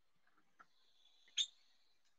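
Faint light ticks, the sharpest about one and a half seconds in, with a thin, steady high tone over the second half.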